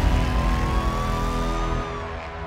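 Film-trailer sound design under the title card: a loud, low rumble with a single tone rising slowly in pitch. It falls away near the end into quieter sustained music.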